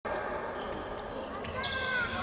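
Futsal play on a wooden sports-hall floor: the ball and players' footsteps knocking faintly on the boards over the hall's reverberant background. A short high squeak near the end, like a shoe sliding on the court.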